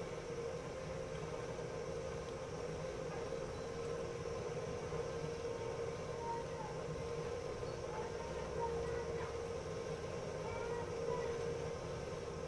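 Metal lathe running steadily while a drill bit in the tailstock chuck bores an 8 mm hole into the end of a metal bar: a constant motor hum with a steady mid-pitched whine.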